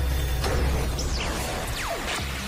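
Sound effects for an animated logo outro: a deep steady bass rumble under swishing whooshes. About a second in a sweep rises and falls, and near the end a long sweep falls.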